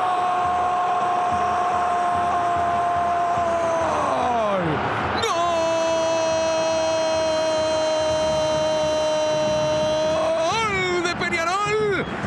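A football commentator's drawn-out goal cry, "gooool", held on one pitch for about four seconds and then falling away, followed by a second long held cry of about five seconds that wavers near the end.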